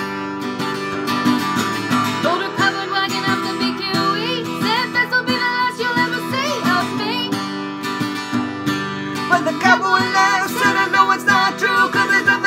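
Acoustic guitar strummed steadily, with a harmonica played over it in an instrumental break; the harmonica comes in about two seconds in, its notes bending and wavering.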